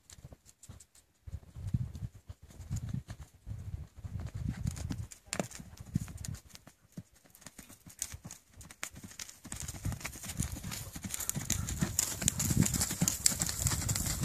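Tennessee Walking Horse's hooves beating on dirt footing as it gaits, a steady rhythm of hoofbeats. From about ten seconds in, a steady hiss grows louder and rides over it.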